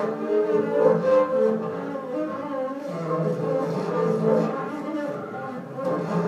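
Solo upright double bass played with the bow, long held notes that shift in pitch one into the next.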